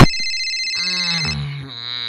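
Toy mobile phone ringing with high, steady electronic tones that stop just past halfway, overlapped by a wavering voice-like sound.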